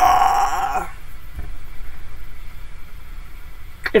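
A woman's long, drawn-out groan of "nooo" in dismay, wavering in pitch and dying away about a second in.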